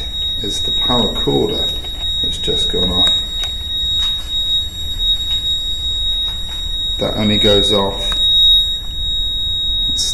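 Handheld paranormal detector going off with a steady, high-pitched electronic alarm tone, which is unusual for it.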